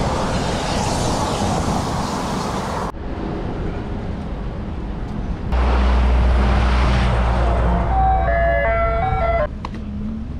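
Wind and road noise from a bicycle riding along a city street. After a cut, an ice cream truck's engine runs in a low steady rumble, and near the end its chime plays a short stepped tune.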